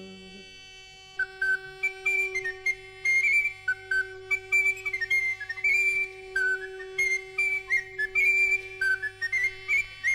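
Instrumental passage of French medieval folk music: a high, flute-like woodwind plays a quick, ornamented melody over a steady sustained drone. It starts about a second in, after a brief lull.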